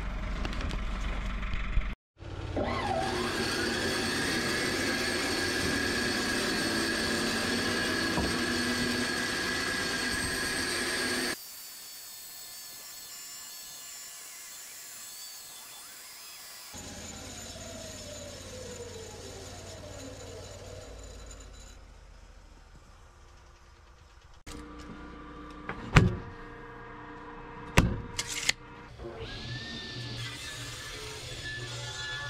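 Table saw heard in several edited clips: the motor whines up to speed and runs steadily while ripping boards, a later stretch has a falling whine as the blade winds down, and two sharp knocks of wood come near the end.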